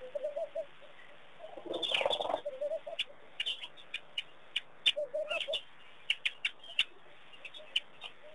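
Birds calling: short low phrases of several notes near the start and again about five seconds in, over a scatter of short high chirps. A brief, louder rush of noise comes around two seconds in.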